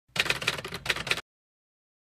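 Typewriter keystroke sound effect: a quick run of sharp key strikes lasting about a second, stopping abruptly.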